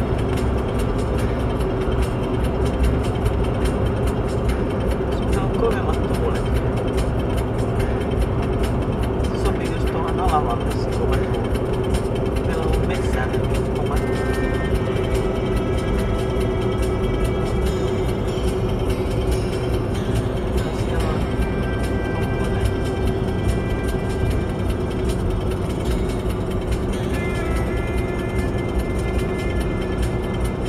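Steady road and tyre noise inside an Audi's cabin at highway speed on new studded winter tyres. Radio voices and music play underneath it, with held notes coming in about halfway through.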